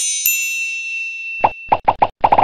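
Intro-graphic sound effects: a bright chime with several high tones held and then fading out, followed near the end by a few quick cartoon pops as graphics pop onto the screen.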